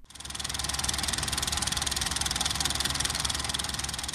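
Film projector running, used as a sound effect: a rapid, even mechanical clatter with a low hum under it, fading in and then out.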